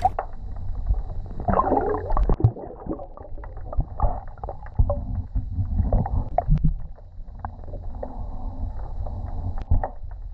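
Muffled underwater sound, heard through a submerged camera's housing: a steady low rumble and gurgling of water, dotted with scattered short clicks and knocks.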